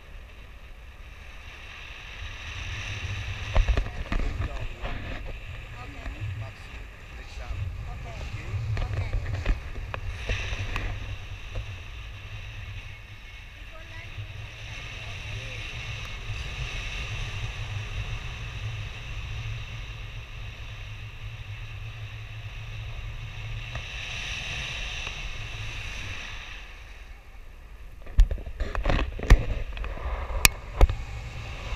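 Wind rushing over the camera's microphone in flight, a steady low rumble with gusts, buffeting harder near the end.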